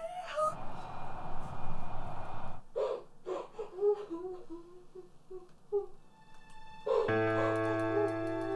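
Film soundtrack: a noisy swell, then a string of short, faint whimpering cries. About seven seconds in, a sustained music chord with a low drone comes in.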